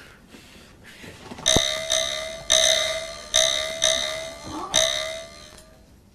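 A bell-like ding struck about eight times in quick succession, beginning about a second and a half in. Each one rings briefly and fades, its lowest note sagging a little in pitch.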